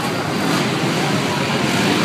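Four-stroke off-road racing engines running around an indoor dirt track, heard together as a steady, noisy drone inside the arena.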